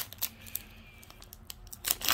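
Foil trading-card pack wrapper crinkling and tearing as fingers peel it open: scattered crackles, sharpest at the start, with a quick run of crackling near the end as the seal gives.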